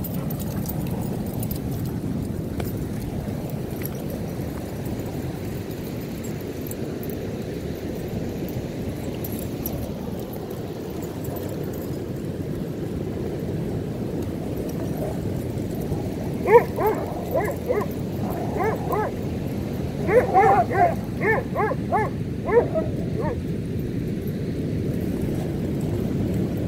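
Steady rush of breaking ocean surf, with a dog barking in two flurries of short, sharp barks from a little past halfway, the loudest bark opening the first flurry.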